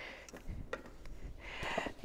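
Faint rustling of paper sheets being handled, with a few light taps, swelling briefly near the end.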